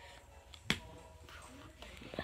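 A single sharp click about a third of the way in, over faint sound from a baseball video playing on a tablet.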